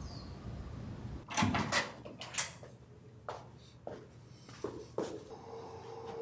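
Hotel doors being opened and shut: a steady hiss cuts off a little after a second in, then a string of short knocks and clicks, about eight of them, spread through the remaining seconds.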